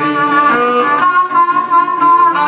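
Downhome blues on harmonica and National resonator guitar: the harmonica holds one long note over the guitar's accompaniment, just after the last sung word of a line.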